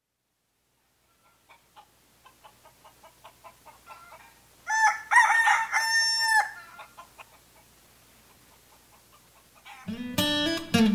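Rooster clucking in a quickening series of short clucks that grow louder, then crowing loudly once (cock-a-doodle-doo) about five seconds in, followed by a few softer clucks.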